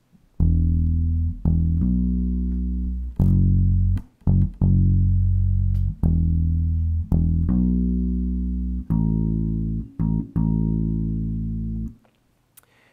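Bass guitar played solo, picking the root notes of a worship-song verse (E, B, F sharp, A) in a repeating one-bar rhythm with notes on one, two, the 'and' of two, and three. The notes are left to ring between plucks.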